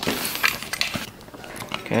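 Thin sheet-metal electrical box being handled while a plastic cable connector is pushed into its knockout: light metallic clinks and rattles, mostly in the first second.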